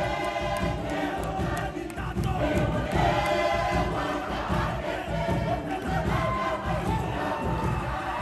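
A large group of voices chanting and singing together over music, with a dense, continuous beat underneath.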